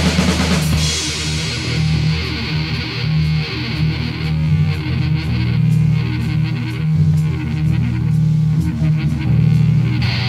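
Instrumental passage of a heavy rock song from a cassette recording: electric guitar playing sustained, shifting low notes over bass, with no vocals.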